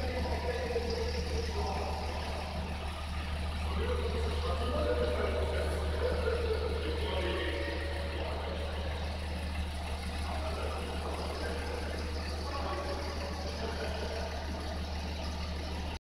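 A steady low mechanical hum, unchanging throughout, with fainter wavering sounds above it.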